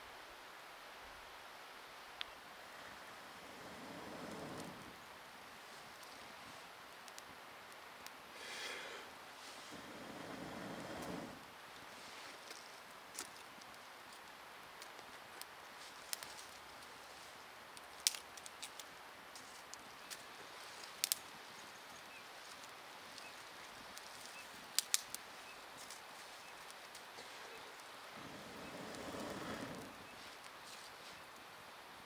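Fire-lighting at a campfire ring: a scatter of short sharp clicks and scrapes at the tinder, and several soft rushes of breath blown onto it, each lasting a second or two, the last as the tinder catches flame.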